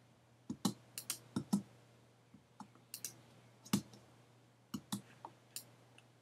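Computer mouse clicking: about fifteen sharp clicks, often in quick pairs and spaced unevenly, over a faint steady low hum.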